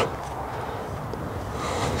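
Steady outdoor background noise with no distinct sound events.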